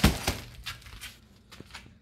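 Cardboard box being handled: a sharp scrape or knock as it starts, then a few light clicks and rustles that die away.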